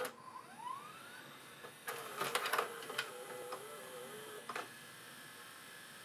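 VCR loading a VHS cassette and threading the tape around the head drum. A motor spins up with a rising whine, then a wavering motor hum runs with a series of mechanical clicks and clunks from the loading mechanism.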